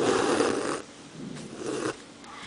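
A double strand of embroidery thread drawn through cloth stretched tight in a wooden hoop: two hissing pulls, the first louder and starting suddenly, the second softer about a second later.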